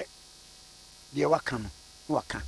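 A faint, steady electrical hum runs underneath a short pause. About a second in, a man's voice speaks briefly.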